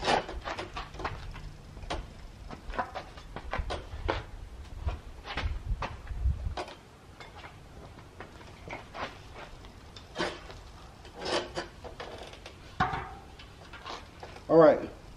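Scattered knocks, clicks and rustling as a fat-tire bicycle wheel and tire are picked up and handled, with a low rumble under the first half that stops about six and a half seconds in, followed by a few separate louder knocks near the end.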